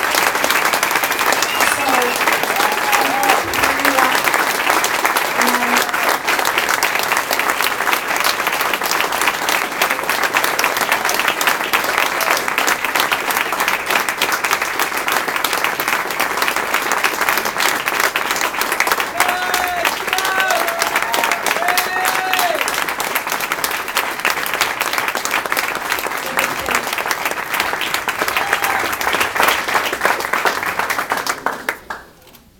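Long, steady applause from a room full of guests, with a few voices calling out over the clapping about two-thirds of the way through.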